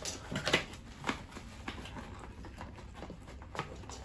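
Cardboard packaging being handled and opened and a tumbler drawn out of its box: scattered clicks, taps and scrapes, the sharpest about half a second in.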